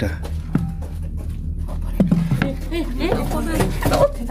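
Indistinct voices talking over a steady low hum, quieter at first with a faint click about half a second in, then speech from about halfway through.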